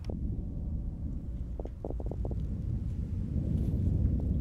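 A low, dense rumbling drone, with a quick run of clicks or crackles about two seconds in.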